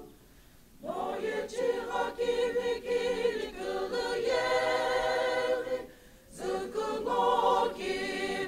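Mixed choir of women and men singing together, with a brief break between phrases just at the start and another about six seconds in.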